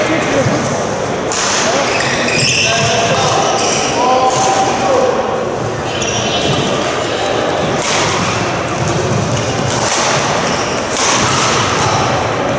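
Badminton rally in a large sports hall: sharp racket strikes on a shuttlecock every one to three seconds, over a murmur of voices in the hall.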